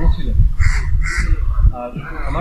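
A crow cawing twice in quick succession, two harsh calls about a second in.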